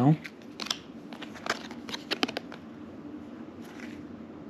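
Trading cards being flicked through by hand, one card slid off the stack at a time, giving a few short, crisp cardboard snaps and ticks.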